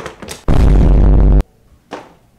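A loud sound effect edited into the clip, lasting about a second with heavy bass, cutting in and out abruptly, preceded by a couple of short clicks.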